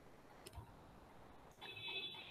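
Near silence: room tone, with a faint click about half a second in and a faint high-pitched tone near the end.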